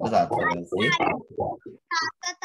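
Speech only: a person talking continuously in Sinhala.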